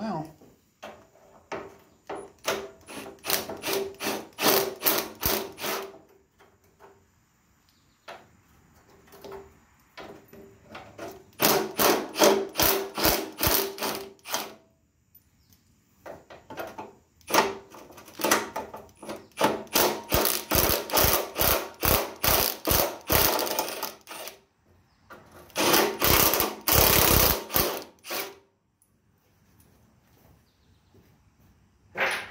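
Impact wrench hammering on bolts in four bursts, each a few seconds long, with pauses between: it is loosening the bolts on a garden tractor's seat and fender area.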